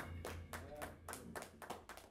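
Sparse, faint hand clapping from a few listeners, just after the band stops playing, with the last of the band's sound fading out at the start.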